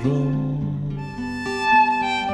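Violin and acoustic guitar playing a short instrumental passage of a slow folk ballad. A guitar chord is struck at the start, and the violin line climbs to a loud high note near the end.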